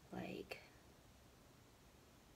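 A brief, soft murmured or whispered syllable from a woman, a fraction of a second long, followed right after by a small click; otherwise near silence.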